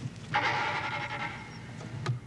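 Hinges of an old trunk's lid creaking in one long drawn-out creak as the lid is raised, ending in a knock as it falls open.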